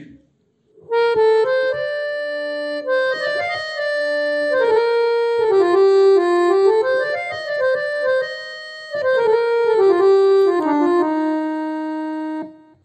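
Single-reed harmonium with a male reed set, playing a slow stepwise melodic phrase of held notes. It begins about a second in and pauses briefly near the end before a last phrase.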